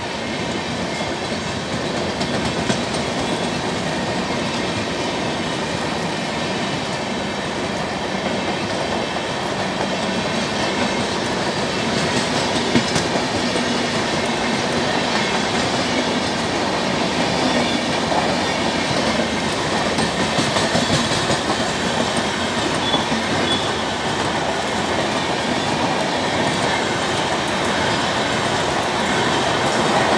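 Rajdhani express passenger coaches rolling past at speed: a steady, loud rumble of steel wheels on the rails with a clickety-clack clatter.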